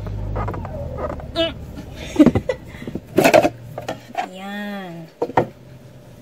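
Clicks and knocks of a rigid perfume presentation box being opened and handled, the Al Haramain Dazzle Intense box, over a steady low hum that fades about halfway. Near the end comes a short vocal sound that rises and falls in pitch.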